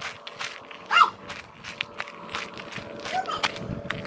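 Footsteps on gravel, with one short animal call about a second in and a fainter one near the end.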